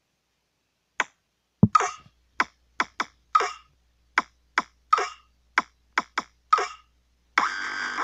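Sparse percussive beat of short, sharp snap-like hits, about fourteen in an uneven rhythm, starting about a second in. A faint low hum comes in just before two seconds, and a longer hiss-like sound comes near the end.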